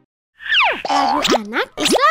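Cartoon boing sound effects: about a third of a second of silence, then a quick run of pitch glides that swoop down and back up, with a short drop in level near the end.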